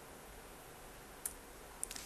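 A single key click on a laptop keyboard about a second in, the Enter key running a typed terminal command, with a fainter click near the end, over quiet room tone.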